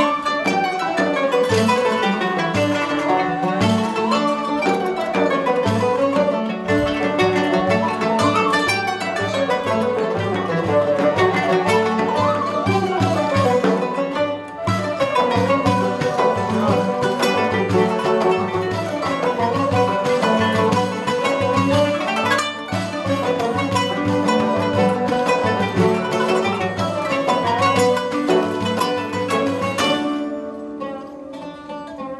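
Turkish kanun (qanun), a plucked zither whose strings are struck with metal finger picks, playing fast rising and falling runs over a steady low repeating pulse of plucked notes. The music eases off at the very end.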